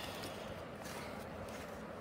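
A quiet pause: only faint, steady room noise, with no distinct sound.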